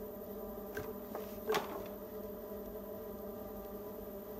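Electric potter's wheel motor humming steadily while a loop trimming tool scrapes clay from the foot of a spinning leather-hard bowl, peeling off ribbons of clay. Two sharper scrapes come about a second in and a second and a half in, the second the loudest.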